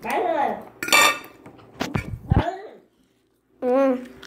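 Children's wordless voices, hums and squeals sliding up and down in pitch, with a clink of a fork on a plate. The sound cuts out completely for about half a second near the end before a held voiced tone.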